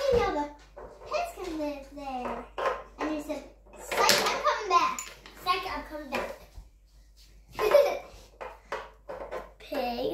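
Children's voices talking, in short phrases with brief pauses between them.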